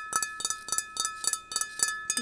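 Fingernails tapping rapidly on a large glass vase, several taps a second, with the glass ringing on in steady tones between the taps.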